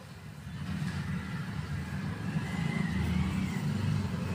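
A low engine rumble of a motor vehicle, growing louder about a second in and then holding steady.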